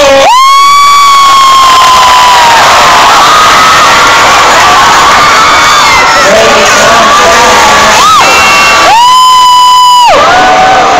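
Concert crowd of fans screaming and cheering, very loud. One shrill voice close to the microphone holds a long high scream near the start, lets out a short one around eight seconds, and holds another through the last second.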